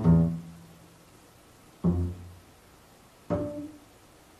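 Upright double bass plucked in three sparse notes, each ringing briefly and dying away, with pauses between; the closing notes of a free-jazz piece.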